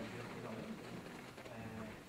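Faint, indistinct low murmur of people's voices in a room.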